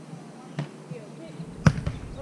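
A volleyball being hit during a rally: a light smack about half a second in and a sharper, louder one near the end.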